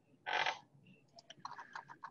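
A short breathy sound near the start, then a rapid, irregular run of light clicks from about a second in: typing on a computer keyboard.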